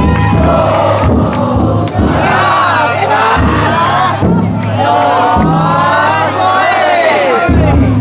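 A large crowd of festival float bearers shouting and chanting together, many voices rising and falling over one another. The sound stays loud and steady throughout.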